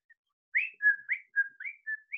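A quick run of short, high whistled chirps, about four a second, rising notes alternating with level ones, starting about half a second in.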